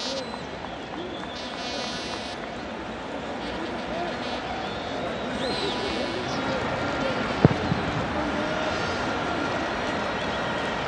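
Pitch-side ambience of a football match: a steady background hiss with scattered distant shouts from players. There is one sharp thud about seven and a half seconds in.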